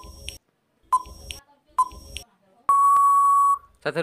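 Quiz countdown-timer sound effect: three short electronic beeping ticks, a little under a second apart, followed by one long steady beep of almost a second that marks time up.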